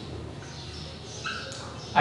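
Felt-tip marker squeaking on a whiteboard while words are written, in a few short high squeaks.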